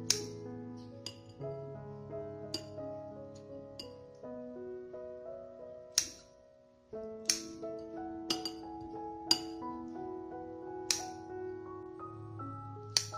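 About ten sharp metallic clicks, spaced unevenly, from metal kitchen scissors snipping braised seitan over a ceramic plate, heard over soft background music of held notes.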